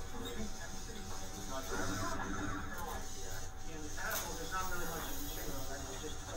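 Indistinct chatter of young voices in a room, over a steady background hiss and hum.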